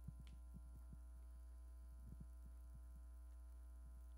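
Near silence: a steady low electrical hum, with a few faint, soft knocks scattered through it.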